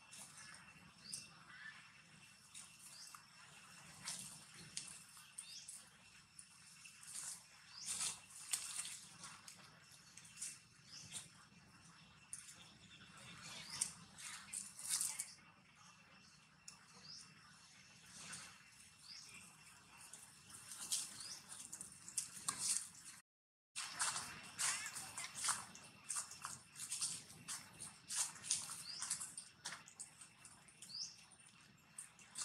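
Repeated short high-pitched chirps and squeaks from small animals over a faint steady high hum. The sound cuts out briefly about three-quarters of the way through.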